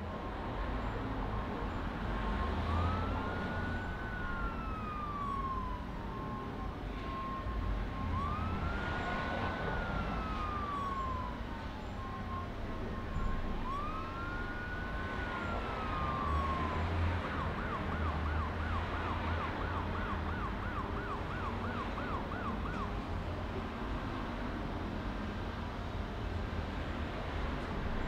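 Emergency vehicle siren over a low traffic rumble: three slow wails, each rising then falling, about five seconds apart, then a fast warbling yelp for several seconds that stops a few seconds before the end.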